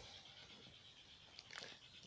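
Near silence: faint outdoor background, with a few faint short ticks near the end.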